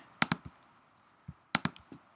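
Computer mouse and keyboard clicks: two sharp clicks just after the start, then a quick run of four about a second and a half in.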